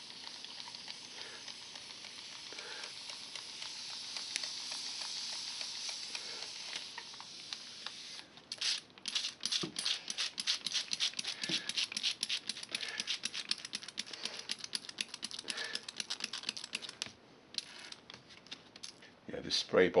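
Plastic trigger spray bottle of diluted white glue (scenic cement) being pumped again and again onto ground-foam scenery, giving a jet rather than a mist. A steady hiss for the first eight seconds or so, then a long run of quick clicking squirts.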